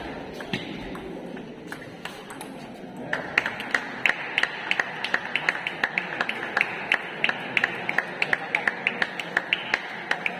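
Table tennis balls clicking on tables and bats. A few hits come in the first seconds, then from about three seconds in there is a quick, uneven stream of sharp pings, several a second, from overlapping rallies at neighbouring tables, over a murmur of voices.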